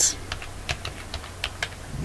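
Computer keyboard being typed on: several quick, irregularly spaced key clicks.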